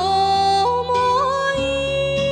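A woman singing a Shōwa-era Japanese popular song over instrumental accompaniment. About two-thirds of a second in she steps up in pitch and holds a long note with slight vibrato.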